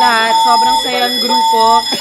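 A woman talking, with a steady, flat electronic tone underneath that cuts in and out.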